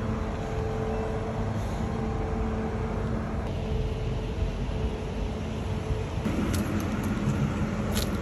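Street traffic: a steady low rumble with the hum of a nearby vehicle engine, which drops to a lower pitch about six seconds in.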